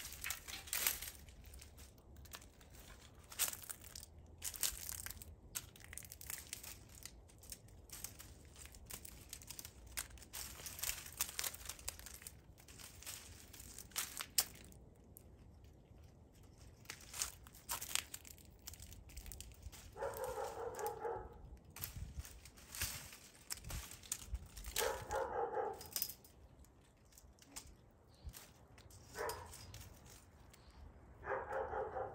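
Dry hyacinth bean vines crackling and snapping as they are pulled and broken off a wire trellis, in quick crisp crackles through the first half. Later come three short pitched calls, a few seconds apart.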